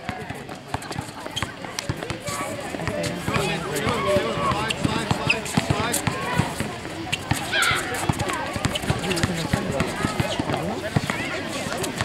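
Basketball bouncing on an outdoor hard court during a game, with many scattered sharp knocks of dribbles and running footfalls, and voices in the background.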